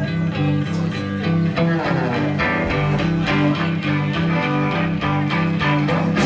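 Live band playing in a club: electric guitars picking over a repeating low riff that steps back and forth between notes.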